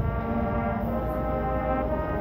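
Marching band brass playing slow, sustained chords, the notes held and changing only a few times.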